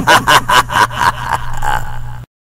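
A man's loud laugh, run through voice effects as in a picotero radio voice drop, in short repeated bursts of about four a second.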